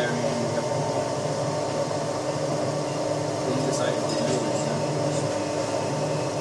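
Tinius Olsen universal testing machine running steadily while it loads a steel test coupon in tension, a constant machine hum with a few faint ticks partway through.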